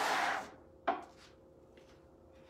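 Handling noise on a work surface: a short scraping rub in the first half second, then a single sharp knock about a second in.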